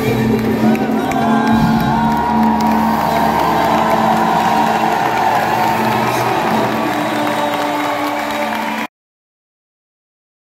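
Live band music with steady held notes under a large crowd cheering and whooping in a concert hall. The sound cuts off abruptly near the end.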